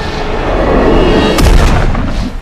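Film action sound effects over the score: a dense rush of sound swells and climaxes in a heavy impact crash about one and a half seconds in.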